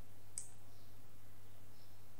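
A single computer mouse click about half a second in, over a steady low electrical hum.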